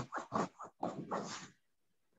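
A dog barking, a quick series of short barks in the first second and a half.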